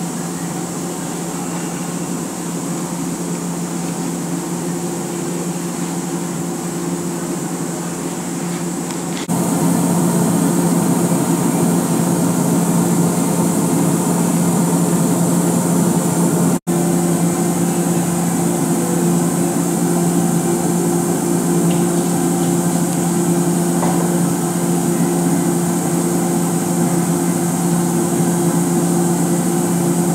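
Steady machine hum of shop equipment with a low droning tone. It gets louder about nine seconds in, and there is a momentary dropout just past halfway.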